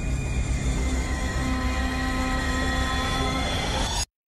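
Horror-trailer sound design: a dense, steady rumbling drone with several shrill, held tones over it, cut off abruptly at the end.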